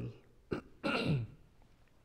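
A man clears his throat once, a short rasp about a second in, preceded by a small click.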